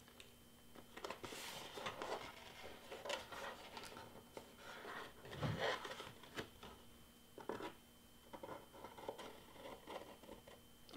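Cardstock being pried and peeled up off a sticky Cricut cutting mat with a spatula tool: faint, irregular scraping, rustling and small ticks as the paper lifts from the mat.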